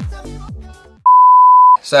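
Pop music with a beat fades out over the first second, then a single loud, steady electronic beep at one pitch sounds for under a second.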